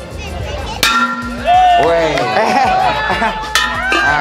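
A long-handled hammer strikes an aluminium alloy car wheel twice, about a second in and again near the end. Each blow is a sharp metallic clang that rings on.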